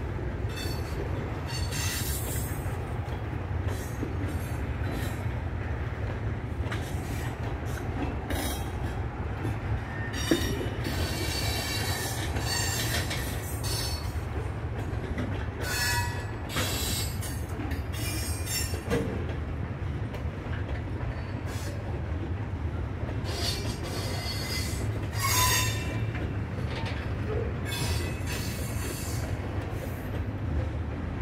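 Freight cars of a Norfolk Southern mixed manifest freight train rolling past: a steady low rumble of wheels on rail, with high-pitched wheel squeals coming and going every few seconds.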